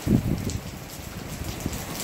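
Gusty wind buffeting the microphone in a low, fluttering rumble that sets in suddenly at the start, over a steady hiss of rain.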